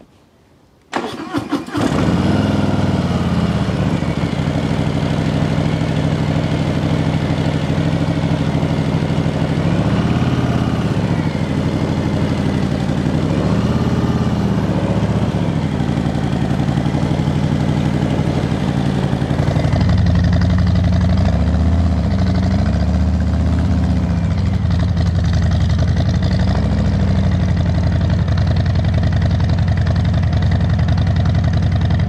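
Custom 2022 Harley-Davidson Softail's Milwaukee-Eight V-twin, fitted with short headers, short mufflers and Jekill & Hyde flap exhaust, starting about a second in and idling loudly with several short throttle blips. Its running grows deeper and louder in the last third.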